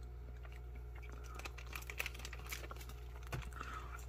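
Faint crinkling and clicking of a plastic MRE flameless-heater bag and food pouch being handled, getting busier from about a second and a half in, over a steady low hum.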